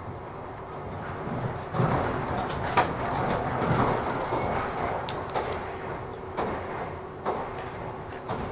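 Running noise inside the passenger cabin of a moving 485-series electric train, a steady rumble that swells for a couple of seconds. It is broken by irregular sharp clicks and knocks from the wheels and the car body.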